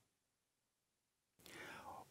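Near silence, then, in the last half second, a faint breathy sound: a man drawing breath before he speaks.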